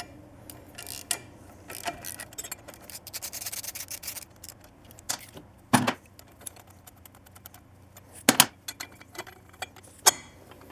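Socket ratchet clicking rapidly as the exhaust head pipe's flange nuts are backed off. After that come two sharp metallic knocks, a few seconds apart.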